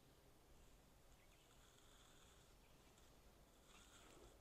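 Near silence: faint outdoor background with a thin high hiss.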